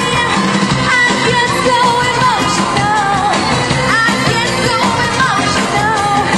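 Live band music at concert volume, with a singer's voice wavering up and down over the band.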